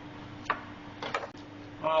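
A chef's knife tapping on a plastic cutting board: a few short, sharp clicks about half a second and a second in, over a steady low hum.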